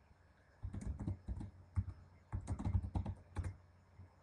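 Typing on a computer keyboard: two quick runs of key clicks, the first about half a second in and the second just past the middle.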